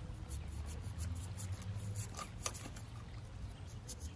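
Stiff paintbrush bristles scrubbing against a cactus's skin in a run of short, scratchy rubbing strokes, brushing at cochineal scale soaked in neem oil. A steady low rumble sits underneath.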